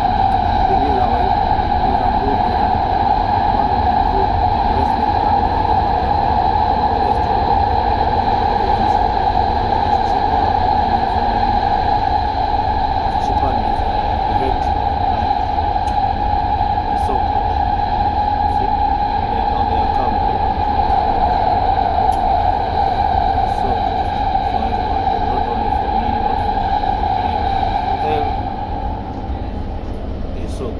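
Doha Metro train running at speed, heard from inside the car: a steady electric whine over a low rumble of the wheels on the rails. The whine fades and the sound drops in level about two seconds before the end.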